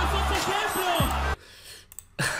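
Freestyle rap battle playback: a hip hop beat with heavy bass under voices and crowd noise, cutting off suddenly a little over a second in.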